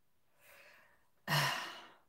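A woman sighing: a faint breath about half a second in, then a short voiced sigh that falls in pitch and trails off into breath.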